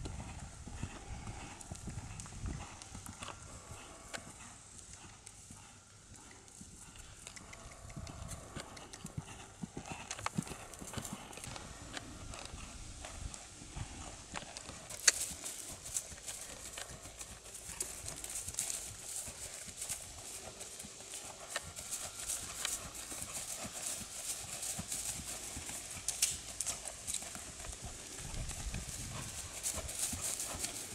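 Hoofbeats of a ridden horse trotting, a run of soft thuds, on sandy dirt and then on grass.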